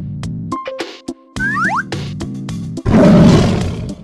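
Bouncy children's background music with a steady beat, a quick rising whistle-like cartoon sound effect about a second and a half in, and a loud animal roar sound effect about three seconds in.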